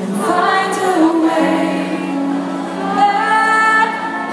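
Live rock band playing a slow passage, a woman singing long, gliding notes over sustained chords.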